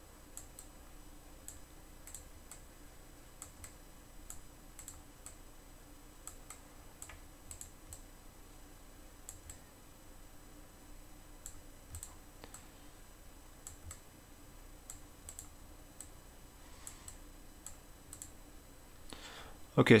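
Computer mouse clicking as selections are drawn and dragged: light, sharp, irregular clicks, about one or two a second, over a faint steady hum.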